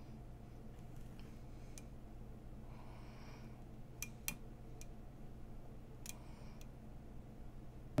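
Faint handling sounds of fingers pressing a tempered glass screen protector onto a phone: a few small sharp clicks, the two clearest about halfway through, and a soft rustle just before them, over a low steady room hum.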